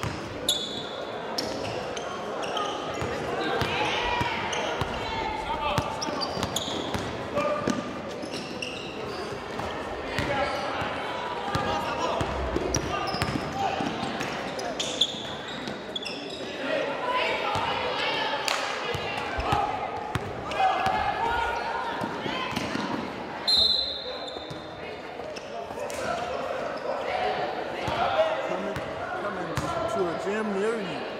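Basketball game in a gym: a ball bouncing on the hardwood floor in repeated sharp knocks, with indistinct shouts and chatter from players and spectators echoing in the large hall. A few short high squeaks come through, the clearest about two-thirds of the way in.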